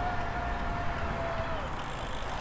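E-bike motor whining at a steady pitch under pedal assist in trail mode, dipping slightly and cutting out about one and a half seconds in, over wind and road noise.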